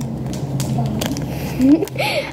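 A girl's low steady hum with plastic packaging rustling in her hands, and a rising vocal sound near the end as she starts to laugh.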